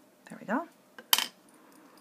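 A short rising tone about half a second in, then one sharp clink of a small hard cosmetic item being set down on a hard surface.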